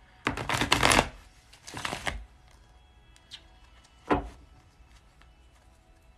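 Tarot deck being riffle-shuffled: a loud rapid run of card clicks lasting under a second, then a second, shorter rustle as the cards are worked together. A single sharp knock follows a couple of seconds later.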